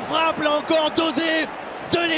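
A football commentator's voice shouting excitedly in quick, high-pitched repeated syllables, celebrating a goal.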